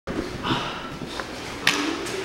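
Room sound of a grappling class on mats: indistinct movement and rustling, with one short sharp rustle or slap about one and a half seconds in.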